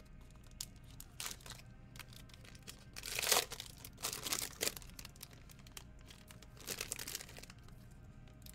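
Foil trading-card pack wrapper torn open and crinkled by hand, in several short bursts, the loudest about three seconds in.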